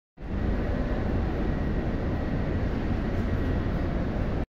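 Steady low rumble and hiss with a faint high steady whine from a Greater Anglia Stadler train standing at the platform, starting abruptly just after the beginning.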